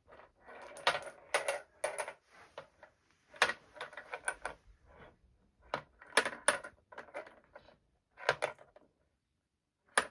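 Plastic beads and rings on a baby activity toy's wire loop clacking and rattling as they are slid and knocked together, in irregular clusters of clicks. It goes quiet for about a second near the end.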